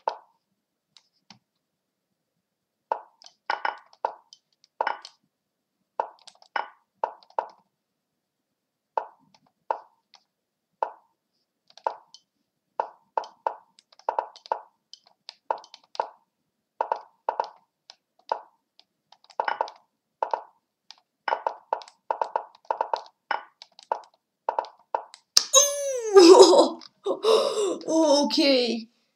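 Lichess chess-move sound effects: short wooden plops, one per move, coming faster as the bullet game's clocks run low, about two to three a second near the end. A couple of seconds before the end they give way to a loud drawn-out vocal outburst whose pitch falls, as the game ends in checkmate.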